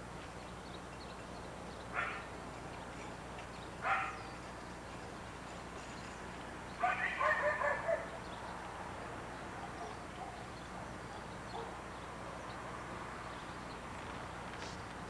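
A dog barking: two single barks about two seconds apart, then a quick run of about six barks in the middle.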